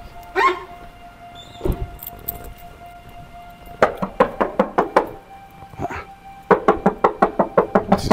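Knocking from inside a car boot (a Lexus RX 330's tailgate): a run of about six sharp knocks, then after a short pause a faster run of about ten, someone shut in the boot banging to be let out. Background music plays underneath.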